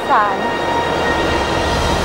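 A steady droning background with several sustained high tones over a low rumble, the kind of sound bed laid under a drama scene. A woman's voice finishes a word right at the start.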